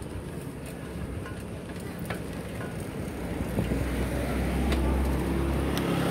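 Riding noise from a moving bicycle: steady rolling noise with small knocks and rattles. A low rumble grows louder from a little past halfway.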